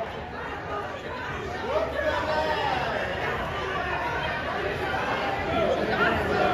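Crowd chatter: many spectators' voices talking at once, with a few single voices standing out now and then.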